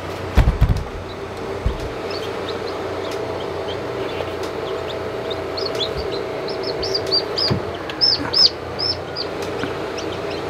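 Newly hatched chicks peeping in short high chirps that come more often in the second half, over the steady hum of an incubator fan. A few low thumps near the start as the incubator is opened and reached into.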